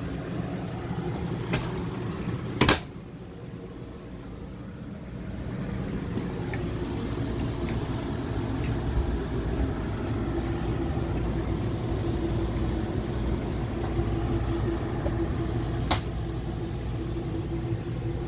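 A steady low mechanical rumble and hum. A sharp click about three seconds in, after which it is quieter for a couple of seconds, and another click near the end.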